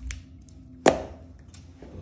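A plastic pen put down onto an open paper planner on a hard worktop: one sharp clack about a second in, with a short ring after it and a softer knock at the start.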